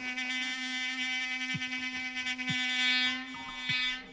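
A buzzy electronic keyboard drone holding one low note, rich in overtones. A few short low thumps that drop in pitch sound under it.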